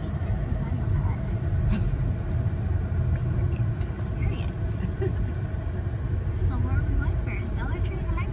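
Steady low rumble of a car's engine and tyres on the road, heard inside the cabin while driving.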